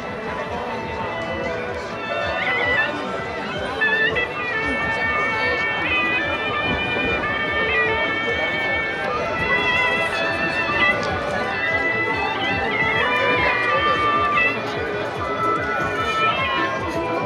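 Suona (Chinese shawm) music: a shrill, reedy melody of held notes stepping up and down, coming in about two seconds in, over the chatter of a crowd.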